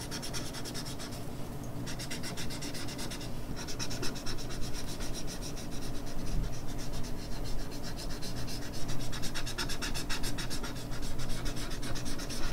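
Large paper blending stump rubbed back and forth in quick strokes over pencil shading on drawing paper: a continuous scratchy rubbing with two brief pauses, about one and a half and three and a half seconds in.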